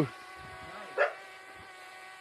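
Steady, faint buzz of a camera drone's propellers hovering nearby, with a single short dog bark about a second in.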